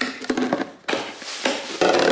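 Snap-lock latches of a plastic airtight food storage container being unclipped and the lid pulled off: a run of sharp plastic clicks and snaps, the loudest near the end.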